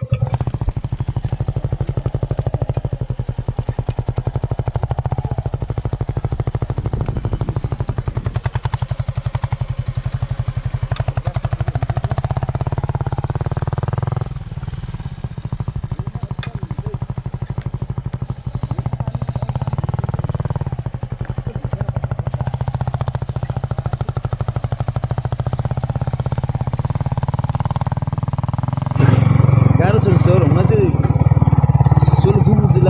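Yamaha MT-15's single-cylinder engine running steadily under way, a fast even pulsing note, dipping in level about halfway through before carrying on.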